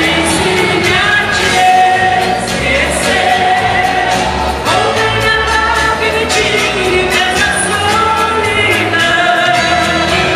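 A woman singing into a handheld microphone over upbeat backing music, amplified through PA loudspeakers, the melody moving steadily with a repeating bass beat underneath.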